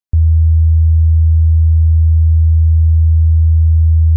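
A loud, steady, low-pitched electronic hum: a single pure tone that switches on with a click just after the start and holds unchanged.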